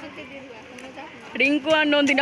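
People's voices: faint talk, then a much louder voice from about one and a half seconds in.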